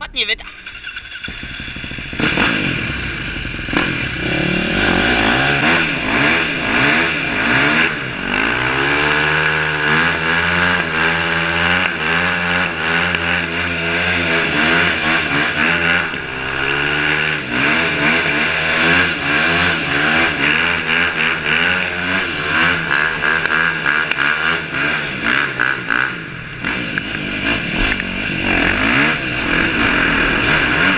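KTM 450 SX-F dirt bike's single-cylinder four-stroke engine ridden through a concrete underpass. The revs climb about a third of the way in and hold steady for several seconds, then rise and fall with the throttle.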